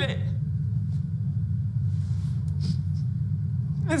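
Steady low background rumble of room tone, with a couple of faint soft breaths from a tearful woman a little past the middle.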